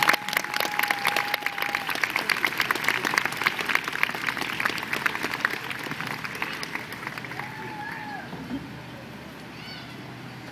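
Audience applauding, the clapping thinning and fading away over several seconds. A long steady high whistle-like tone sounds in the first two seconds, and a short wavering high call comes near the end.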